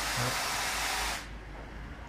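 A steady rushing hiss, like air blowing, that cuts off suddenly a little over a second in.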